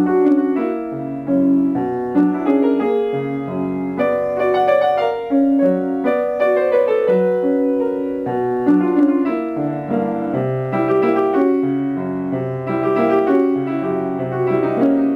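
Solo piano music played on an upright piano: a flowing line of notes over held lower notes, without a break.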